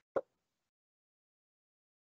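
A single short pop about a fifth of a second in, then silence.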